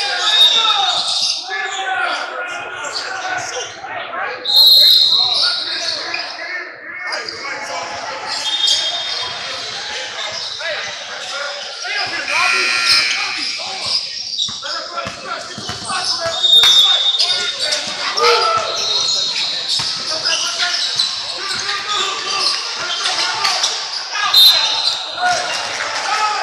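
Basketball game sounds in an echoing gym: a ball dribbling on a hardwood court, players' and spectators' voices, and several short high-pitched squeals through the play.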